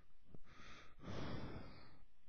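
A person breathing close to the microphone: a short breath, then a longer one of about a second.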